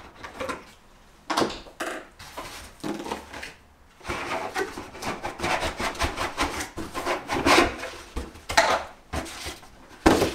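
Cardboard packaging and hard plastic parts scraping and knocking together while an oil extractor's container and pump tube are pulled out of the box by hand, in irregular bursts with a short lull about four seconds in.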